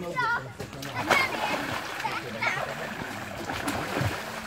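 Water splashing and sloshing in a small inflatable pool as children jump and play in it, with brief children's shouts over it.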